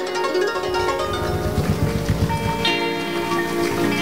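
Live band playing an instrumental passage between sung lines: sustained chords with some plucked notes, and a low rhythmic pulse through the middle.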